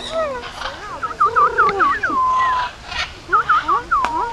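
Parrots calling close by: a quick run of whistled notes that dip and rise, a long level note about two seconds in, then another short run near the end.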